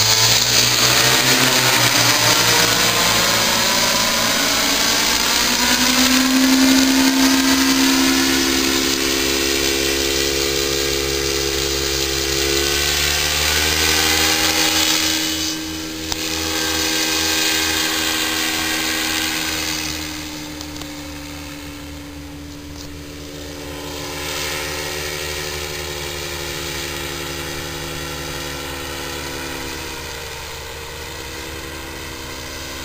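Paramotor engine and propeller buzzing as it flies low overhead. The pitch falls as it passes in the first few seconds, then the sound grows fainter after about fifteen seconds as it moves off.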